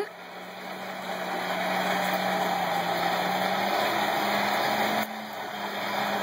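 A steady machine noise, a roar with a low hum under it, building up over the first two seconds and dipping briefly about five seconds in.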